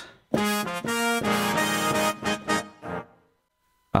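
Native Instruments Session Horns, a sampled horn section of trumpets, trombones and tenor sax, played from a keyboard. It plays a short run of held chords that change several times and stop about three seconds in.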